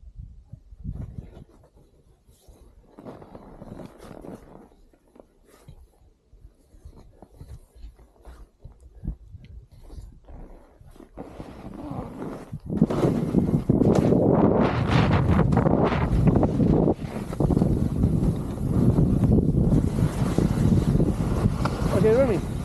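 Skis scraping and sliding on snow with wind rushing over the camera's microphone. The first dozen seconds hold only faint, scattered scrapes; at about twelve seconds the noise jumps to a loud, continuous rush as the skier sets off downhill.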